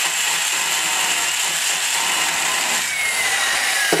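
Valve seat grinder running a 30-degree stone on a pilot, lightly grinding the top of a valve seat: a steady hissing whir with a faint whine that sinks slightly in pitch, stopping just before the end. It is a light top cut to move the valve's seat contact line, which sat too far down the edge.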